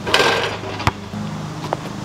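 Basketball bouncing on an asphalt court: two sharp knocks a little under a second apart, after a short noisy rush at the start, over a low steady hum.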